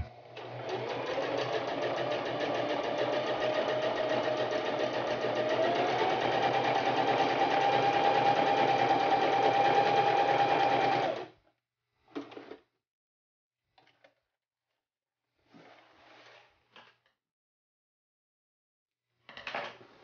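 Electric sewing machine running a straight stitch through the edge of waxed canvas, its pitch stepping up as it speeds up about halfway through, then stopping suddenly. A few faint, brief sounds follow.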